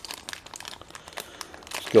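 Thin clear plastic bag crinkling in the hands as it is worked open, a scatter of small crackles.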